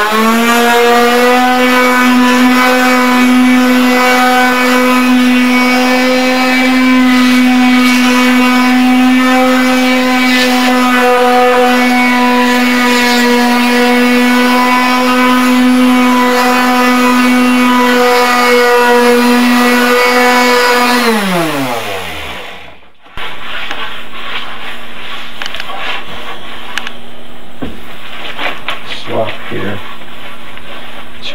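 Small electric finishing sander switched on, quickly spinning up, and running at a steady pitch while sanding varnished mahogany, then switched off about 21 seconds in, its pitch falling as it winds down over about two seconds. Afterwards a much quieter faint hum with light knocks.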